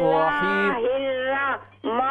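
A woman reciting the Quran in a drawn-out, melodic tajweed chant, heard through a telephone line: one long held phrase ending about one and a half seconds in, then a brief pause and the next phrase beginning just before the end.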